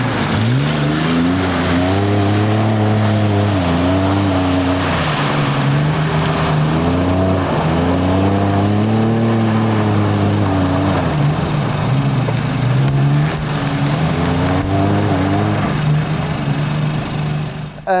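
A 4x4's engine revving up and easing off in long surges, about three times, as it drives through mud.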